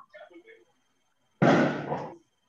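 A sudden loud burst of rushing noise about one and a half seconds in, lasting about half a second and fading away.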